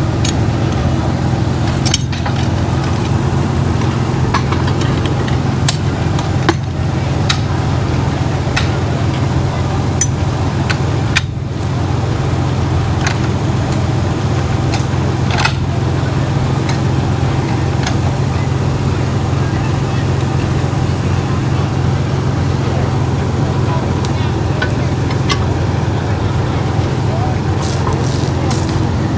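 An engine running steadily with a low drone, with scattered knocks and clanks as a log is rolled and set on a sawmill carriage with a cant hook.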